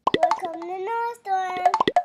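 Animated logo sting: a few sharp cartoon pops at the start and again near the end, around a child's voice held on steady pitches in between.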